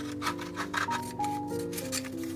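Sheets of printed paper rustling as they are handled and cut with scissors, in short crinkly bursts during the first second and again near the end, over steady instrumental background music.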